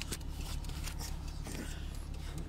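Rustling and light clicks of a handheld phone and moving dogs, over a steady low hum, the VW Rialta's engine idling.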